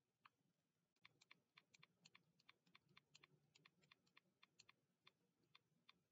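Near silence with faint, quick clicks like typing, about four or five a second in an irregular run, starting about a second in.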